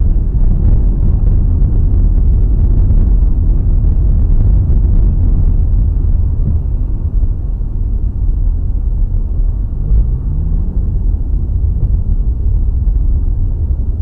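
Loud, steady low rumble of a car driving on a wet road, heard inside the cabin through a dashcam microphone. The engine note rises about ten seconds in.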